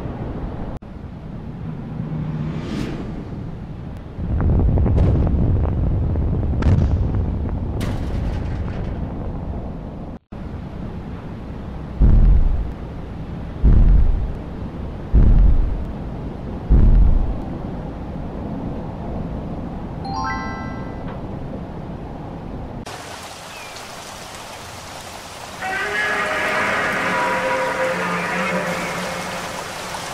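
Monster-movie soundtrack of music and effects: low rumbling with sharp cracks, then four heavy booms about a second and a half apart, and a long pitched sound with many overtones near the end.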